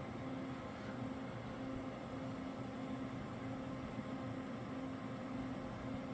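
Desktop PC running under full load, its cooling fans and AIO liquid cooler giving a steady whir with a low hum that wavers in and out.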